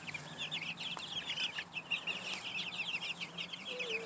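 A flock of young meat and layer chicks peeping without a break: a dense chorus of short, high, falling peeps from many birds at once.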